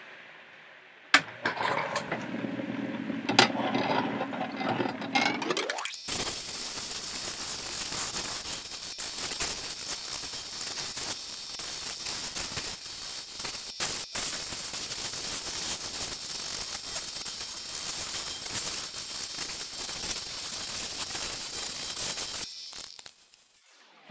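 A stone held against the spinning 3000-grit wheel of a lapidary cabbing machine, making a steady hiss of fine grinding and polishing that stops near the end. A couple of sharp knocks come in the first few seconds.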